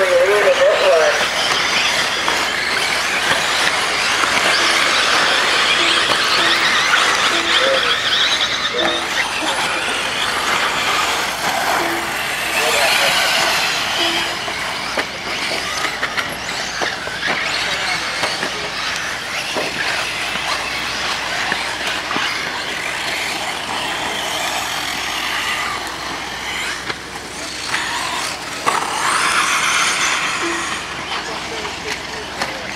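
Electric 1/8-scale RC buggies racing on a dirt track, their motors whining high and rising and falling in pitch with the throttle, with a few short beeps in the first half.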